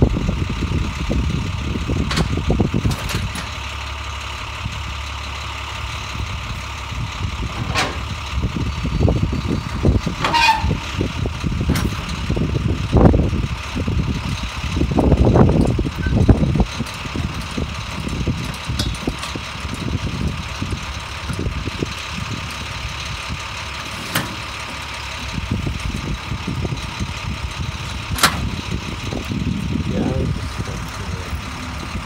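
Box truck's engine idling steadily, with irregular clanks, knocks and rumbles as a loaded pallet is moved on a hand pallet jack across the truck's lowered liftgate and onto the pavement. A brief high wavering squeal comes about ten seconds in.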